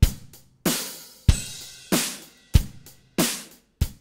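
A simple multi-track drum loop playing back: kick drum and snare alternating, about three hits every two seconds, with hi-hat. The snare is an electronic snare sample triggered in Kong from the loop's audio, replacing the original snare.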